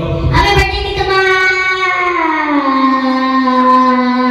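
A boy singing into a handheld microphone, holding one long note that drops in pitch about two seconds in and then stays steady.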